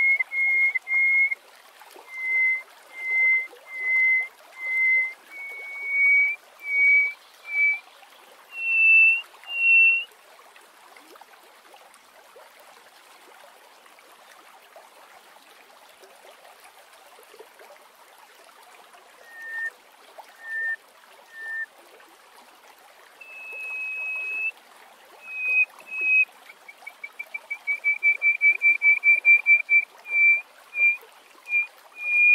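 Hoopoe lark singing: a series of clear, whistled notes that step upward in pitch over the first ten seconds. After a pause of several seconds come three lower notes and a longer held note, and near the end a fast run of short notes.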